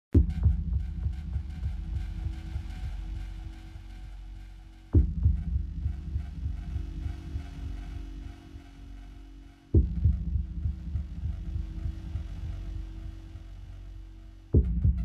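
Title-sequence sound design: a deep bass boom about every five seconds, three in all, each dying away in a throbbing low rumble over a faint steady hum.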